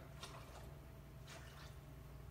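Near silence: steady low room hum with a few faint light clicks, in two small pairs, from a small cup being handled and set down on the table.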